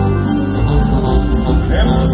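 Live regional Mexican band music playing loud and steady over a low bass, in a passage with little or no singing.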